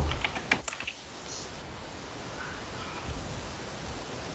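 A quick run of computer keyboard key clicks in the first second, then only a faint steady hiss.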